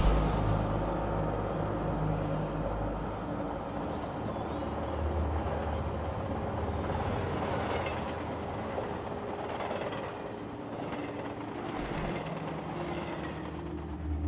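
Passenger train running along the track: the steady running noise of the moving carriages.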